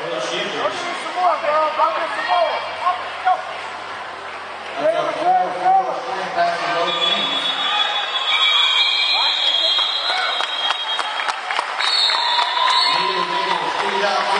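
Voices of a crowd in a large, echoing hall. About seven seconds in, high steady whistle tones sound over them for several seconds, with scattered clapping, and another short whistle tone comes near the end.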